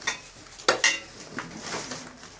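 Household clutter being shifted by hand: objects clatter and rustle, with two sharp knocks close together just under a second in and a softer one later.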